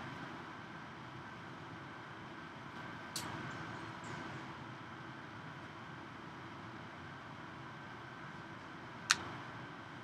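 Steady room hum during a pause in a lecture, broken by two sharp clicks: a faint one about three seconds in and a louder one near the end.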